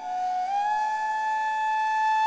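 Bansuri (bamboo transverse flute) playing a slow melodic phrase: a low note slides up about half a second in and is then held steadily.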